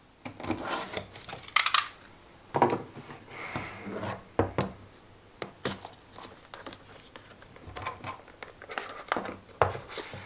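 A small cardboard box slit open with a snap-off utility knife and then handled: scattered clicks, scrapes and rubbing, with a longer scraping stretch a few seconds in.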